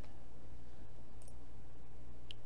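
A steady low hum under a faint computer mouse click or two a little over a second in, as the slicing is started in the software.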